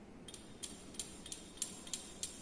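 Glass clinking: about eight light, irregular clicks as the lip of a small glass measuring cylinder taps against the rim of a test tube while Fehling's solution B is poured into it.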